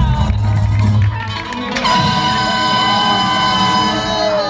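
Battle music played loud over the sound system: a heavy bass beat that drops out about a second in, then a long held high note with many overtones.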